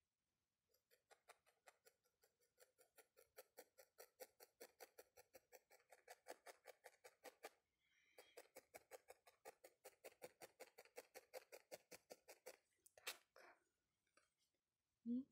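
Felting needle stabbing rapidly and repeatedly through wool into a foam pad: faint, even pokes about five or six a second, in two runs with a short break about halfway, and a brief rustle of the wool near the end.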